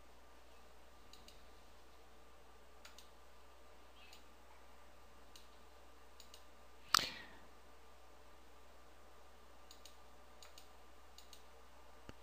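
Faint computer mouse clicks, several scattered and some in quick pairs, with one much louder sharp click about seven seconds in, over a low steady hum.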